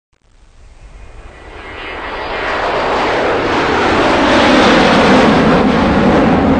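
Intro whoosh sound effect: a rushing noise that swells steadily from silence to loud over about five seconds, like a jet passing close.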